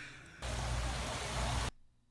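A steady burst of hiss-like noise, a little over a second long, that starts and cuts off abruptly, followed by a moment of near silence.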